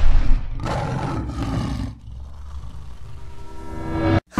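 Lion roar sound effect in a record-label logo sting, coming out of the tail end of a loud explosion boom. The roar lasts about a second and a half and gives way to a quieter, sustained musical swell.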